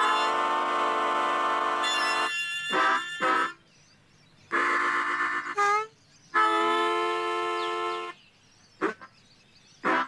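Harmonicas playing three long held chords, each one to two seconds long, with short notes that bend quickly in pitch and brief pauses between them.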